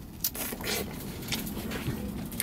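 A person biting into a ripe Dixired peach and chewing, with a few short sharp sounds, the first about a quarter second in.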